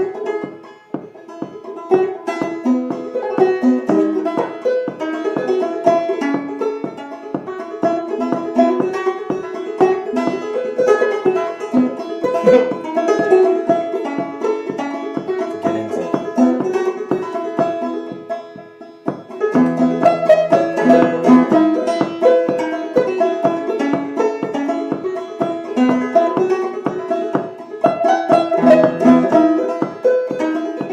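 Open-back Vega banjo played solo, an unbroken run of plucked notes in double C tuning with the fifth (drone) string tuned down from G. The playing eases into a short lull about two-thirds of the way through, then picks up again.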